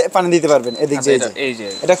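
Speech: a man's voice talking.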